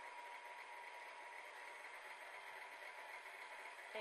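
Stand mixer running steadily with its dough hook, kneading a yeasted beignet dough; a faint, even motor hum.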